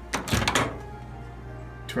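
Panasonic Genius Sensor microwave's door being popped open: a short, loud clunk of the door latch lasting about half a second, just after the start.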